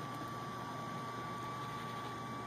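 Steady background hiss with a faint, constant high-pitched whine and no distinct events.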